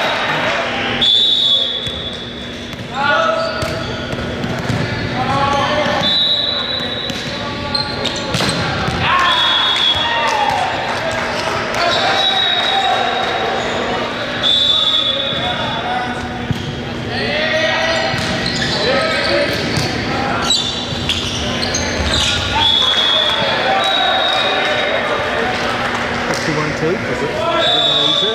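Indoor volleyball game in a gymnasium: players shouting and calling, the ball struck and bouncing on the hardwood floor. About eight short, high, steady squeals sound through it, each lasting up to about a second.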